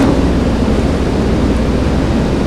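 A steady low rumbling noise with a fainter hiss above it, unchanging throughout.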